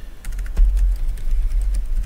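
Typing on a computer keyboard: a quick run of keystroke clicks, over a low rumble.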